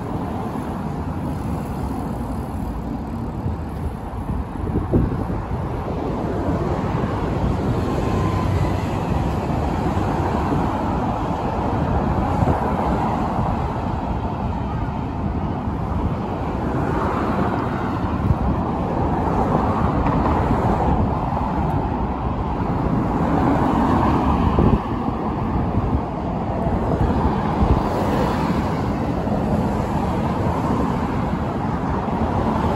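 Steady city road traffic: cars and a delivery truck passing on a multi-lane road, their tyre and engine noise swelling and easing as each goes by.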